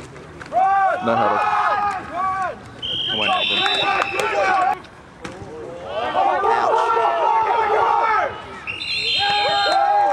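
Football players and spectators shouting and cheering over one another during a play. Short, steady, high referee's whistle blasts come about three seconds in and again near the end.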